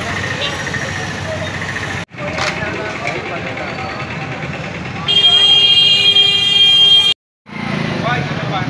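Busy street noise with voices and passing motorcycles. A loud vehicle horn sounds steadily for about two seconds near the end. The sound cuts out briefly twice.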